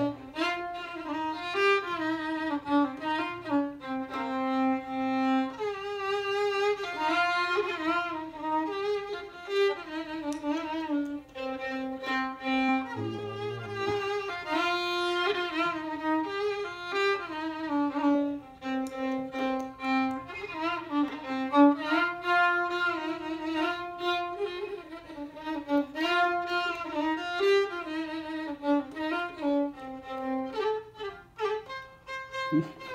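Solo violin playing a melody, its notes held with vibrato and sliding from one to the next.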